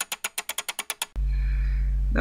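A fast, even run of sharp ticking clicks, about a dozen a second, from the animated gear logo's sound effect. It stops a little over a second in and gives way to a steady low electrical hum.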